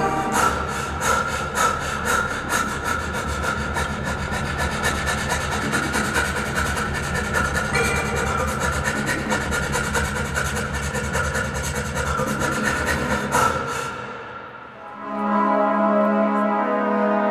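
Show-opening music over the hall's sound system: a fast, scratchy, rasping rhythm over a steady low drone. It fades down near the end as a brassy chord swells in.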